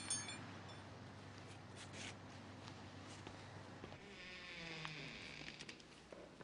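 Faint buzzing of a fly, wavering in pitch, heard for about a second and a half near the end over quiet room tone with a few light ticks.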